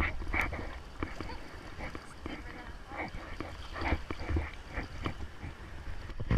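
Sea water lapping and sloshing close to a camera held at the water's surface, with a low rumble on the microphone and scattered faint sounds of distant voices.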